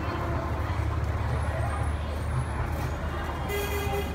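Night-time city street noise: a steady low traffic rumble with indistinct voices. A brief, high-pitched sound comes near the end.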